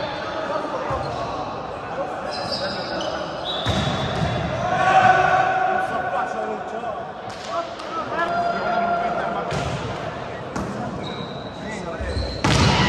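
Indoor volleyball play echoing in a sports hall: the ball struck several times, shoes squeaking briefly on the court floor, and players' and spectators' voices calling out, loudest about five seconds in.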